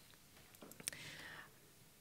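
Near silence in a pause of a talk, broken by a faint click and a short, faint breathy hiss about a second in: the presenter breathing at his headset microphone.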